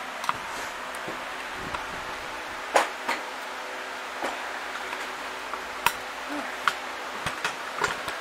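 Scattered light knocks and clicks, about half a dozen, the loudest a little under three seconds in, over a steady background hiss.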